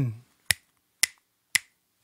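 Finger snapping in a steady beat: three sharp snaps about half a second apart, setting the tempo for the opening of a song.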